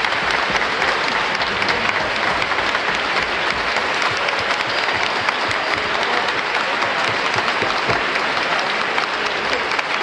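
Concert audience applauding: dense, steady clapping from many hands.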